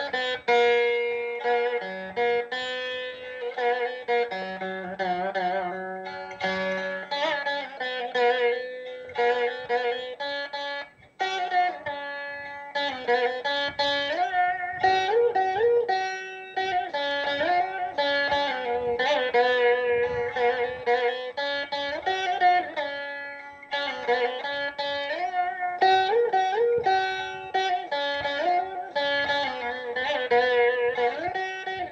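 Veena played solo in Carnatic style: plucked notes with sliding, bending pitches, with a brief break about eleven seconds in.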